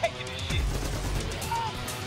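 Action-film soundtrack mix: a music score under shouting voices, with a few sharp hits.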